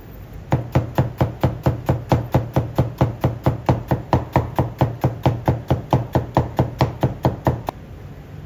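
Chinese cleaver slicing onions on a plastic cutting board: quick, even knocks of the blade on the board, about five a second. They start about half a second in and stop just before the end.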